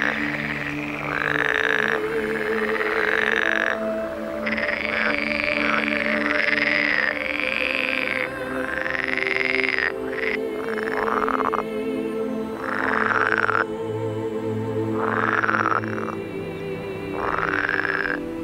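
Frogs croaking in a string of calls, each rising and then falling in pitch, spaced one to two seconds apart, over background music with sustained low tones.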